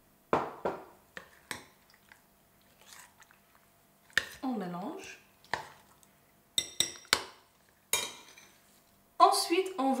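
A metal spoon clinking and knocking against a glass bowl as thick batter is spooned over raw shrimp and stirred in, with wet squelching from the batter. The clinks come irregularly, a dozen or so sharp strikes, and a voice starts near the end.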